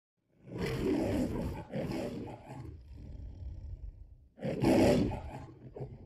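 The lion roar of the Metro-Goldwyn-Mayer logo: a lion roars twice in quick succession about half a second in, rumbles more quietly, then gives a third, loudest roar near the end, which trails off.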